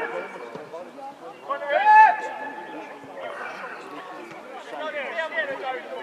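Voices calling out during a football match: scattered shouts, with one loud, drawn-out shout about two seconds in.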